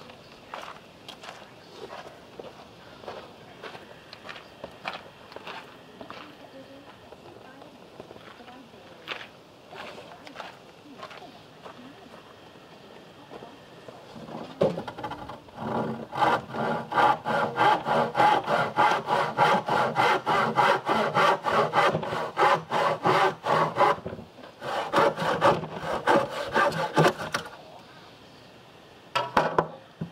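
Handsaw cutting across a timber batten with quick, even back-and-forth strokes, starting about halfway through, with a short pause before a final run of strokes. The first half holds only a few faint knocks.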